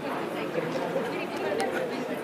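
Crowd chatter: many voices talking over one another with no single clear speaker, and a couple of sharp clicks about one and a half seconds in.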